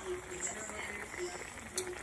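Chicken adobo simmering in a pan: a low, steady bubbling hiss of the braising liquid, with a single small click near the end.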